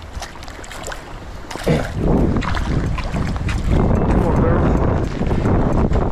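Wind buffeting the microphone, growing much louder about two seconds in, over rain and the splashing of a hooked perch being pulled out at the water's edge.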